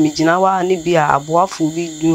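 A woman talking, with crickets trilling steadily behind her voice.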